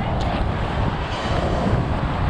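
A steady, low rumbling noise with no clear pitch or distinct events.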